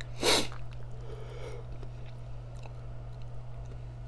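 A person sneezing once, sharply and loudly, about a quarter second in, followed by a softer breathy sound about a second later, over a steady low hum.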